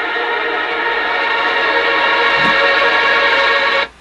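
Heavily effected electric guitar recording played back, a dense sustained drone that barely sounds like a guitar: weird, eerie and discomforting. It cuts off abruptly just before the end.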